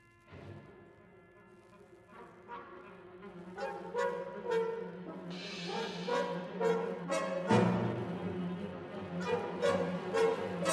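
Symphony orchestra playing film music, swelling from quiet to loud over a series of repeated accented chords, with the low end growing much stronger about three-quarters of the way through.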